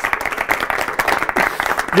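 A small group of people applauding: a steady stream of quick hand claps.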